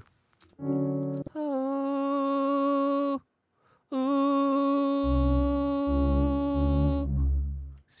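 A voice humming a long, steady note at about C sharp, twice, with a short break between, matching pitch to find the key. Under the second held note a synth bass plays a run of short low notes.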